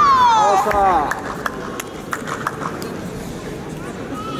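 A long high-pitched shout that falls steadily in pitch over the first second, heard over the low murmur of a sports hall, followed by a few sharp taps.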